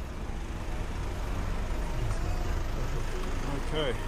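Road traffic running close by on a city street, with a van's engine behind the rider and a steady low rumble of wind on the microphone while cycling.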